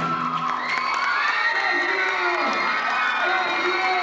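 Junior-high school audience cheering, with many high shouts and whoops that rise and fall, as the rock band's last chord dies away in the first second.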